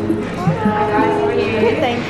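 People speaking: a brief exchange of greetings.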